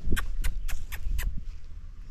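A quick run of sharp clicks or taps, about four a second, fading out after a second and a half, over a low rumble of wind on the microphone.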